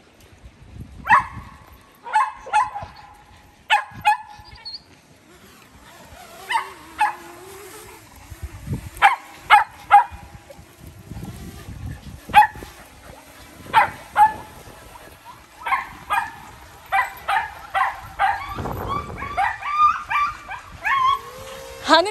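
Dogs barking in short, sharp barks. The barks are scattered at first, then come faster and closer together over the last several seconds.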